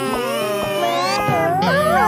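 Squeaky, meow-like cartoon character vocalisations with wavering, sliding pitch, over background music.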